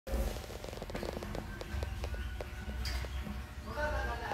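Snakehead fish thrashing in shallow water on a concrete floor: a rapid, irregular run of wet slaps and splashes. A voice begins near the end.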